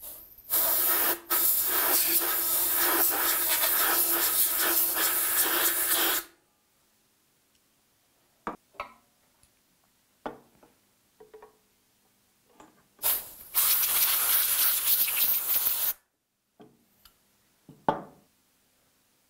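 Compressed-air blow gun blasting dust and chips out of an aluminium vacuum gripper profile: a loud hiss lasting about six seconds with a brief break near its start. A few light knocks follow, then a second blast of about three seconds.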